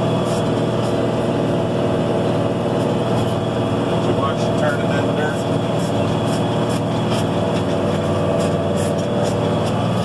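Case 4890 four-wheel-drive tractor's six-cylinder diesel engine running steadily under load, pulling a disk chisel plow through corn stalks, heard from inside the cab.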